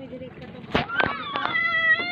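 Two sharp knocks about three-quarters of a second and a second in, then a high-pitched, drawn-out vocal cry held steady through the last half second.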